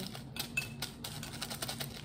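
Small plastic packets and objects handled on a tabletop: a run of light, quick clicks and crinkles.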